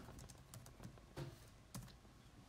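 Faint typing on a laptop keyboard: a few irregular key clicks.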